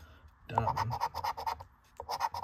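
A coin scratching the coating off a paper scratch-off lottery ticket in a quick run of short strokes. It starts about half a second in and stops just before the end.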